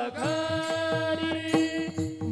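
Devotional kirtan accompaniment between sung lines: a steady held note under repeated sharp strikes of small hand cymbals (taal), with a low drum tone beneath.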